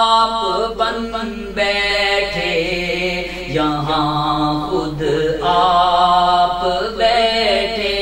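A man's voice chanting Sufi mystical poetry (kalam) in long, held melodic lines.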